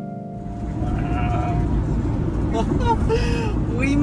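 Piano music fades out at the start, giving way to steady road and engine noise inside a moving van's cabin.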